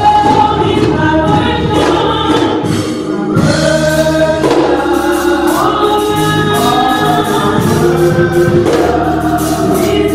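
Gospel praise team of women singing in harmony over live band backing with electric guitar and percussion. The sound dips briefly about three seconds in.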